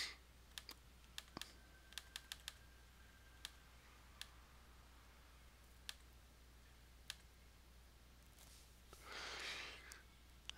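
Faint, scattered clicks of a computer mouse, about a dozen over the first seven seconds, with a soft breath near the end.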